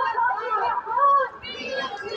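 Indistinct chatter from several nearby voices talking over one another, some of them high-pitched.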